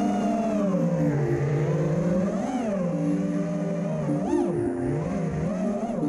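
FPV quadcopter's brushless motors whining, the pitch rising and falling steadily with the throttle, with two quick sharp throttle punches about two and a half and four and a half seconds in.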